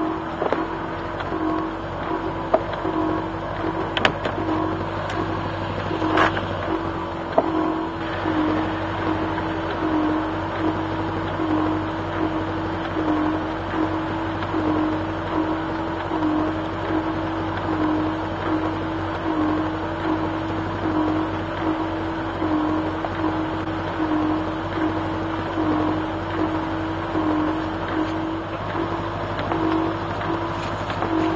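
A Triumph Roadster running with the engine at idle: a steady mechanical hum with a tone that swells and fades evenly, a little more than once a second. A few sharp clicks come in the first several seconds.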